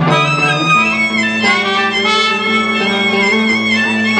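Blues band playing live: a held, wavering lead melody over sustained low notes, with the low note stepping up about a second in.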